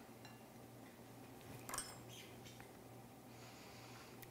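Near silence with room tone, broken by a faint, short tap a little under two seconds in as mango slices are set down on a ceramic plate.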